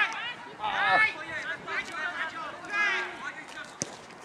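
Men's voices shouting short calls across a football pitch, several in a row, with one sharp knock near the end.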